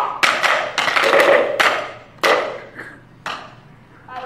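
A series of sharp knocks at uneven intervals, close together in the first second and a half, then two more standing apart and fainter.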